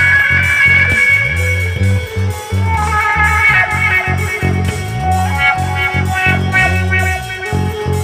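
Electrically amplified hurdy-gurdy playing a melody over the steady hum of its drone strings, backed by a bass line and a steady beat.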